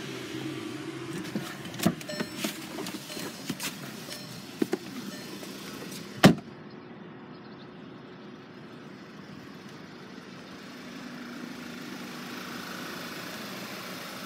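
Small clicks and knocks over a steady hum in a car cabin, then a car door shutting with one loud thud about six seconds in. A quieter steady hum follows.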